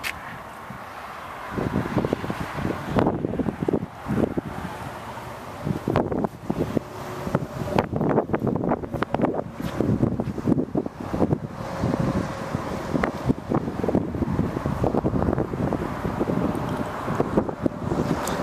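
Wind buffeting a handheld camera's microphone in irregular gusts, starting about a second and a half in.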